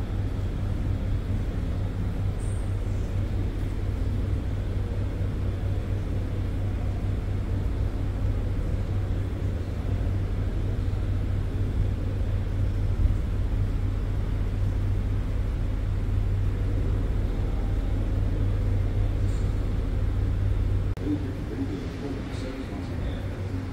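Steady low rumble with an even hiss over it: the background noise of a large hall, with no distinct event. It drops suddenly about a second before the end.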